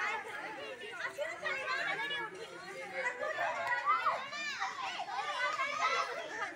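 A crowd of children and young women chattering and calling out over one another at play, with one high call standing out about four seconds in.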